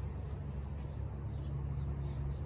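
Steady low wind rumble on the microphone, with faint high chirps in the second half.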